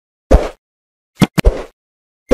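Sound effects of an animated subscribe button: a soft pop, then two quick mouse clicks and another pop about a second later.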